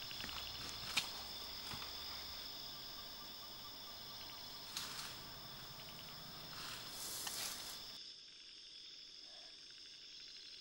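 Steady, high-pitched insect chorus of crickets, with a few brief rustles or clicks over it. About eight seconds in the rest of the background drops away and the insect tones carry on more faintly.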